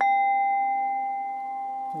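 A metal chime struck once, ringing a single clear tone that fades slowly, over a soft steady background drone.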